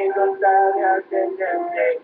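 Male voice singing a melody, accompanied by acoustic guitar.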